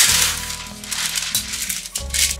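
Baking parchment rustling and crinkling as it is unrolled and spread over a metal baking tray, loudest in the first half second, over background music.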